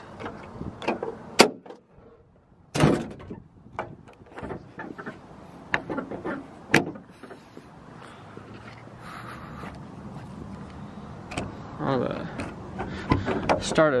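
Metal clunks and clicks, the loudest about three seconds in, as the hood and door of a 2001 Jeep Wrangler TJ are handled and shut. Near the end its 4.0-litre inline-six is cranked and starts.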